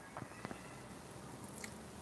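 Faint room tone with a few soft clicks, about a fifth and half a second in and again past a second and a half.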